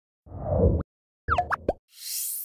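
Animated end-card sound effects: a short swelling swoosh, then about a second later a quick cluster of gliding pitched blips.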